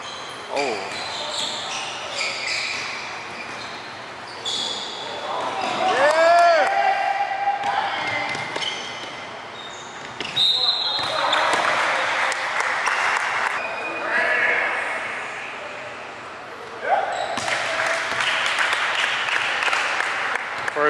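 Basketball game sound in a gym hall: a basketball bouncing on the hardwood court with players' and spectators' voices shouting, echoing in the large room.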